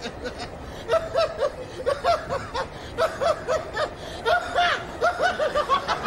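A man laughing out loud in runs of short, quick 'ha' bursts, with brief pauses between the runs.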